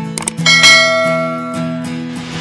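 Channel outro music with steady sustained notes. A bright chime strikes about half a second in and rings away over about a second.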